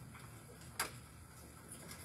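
Quiet room tone with one sharp click just under a second in.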